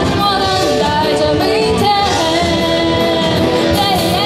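A woman singing a pop-rock song live into a handheld microphone, backed by acoustic guitar and a band with drums; her sung notes waver with vibrato.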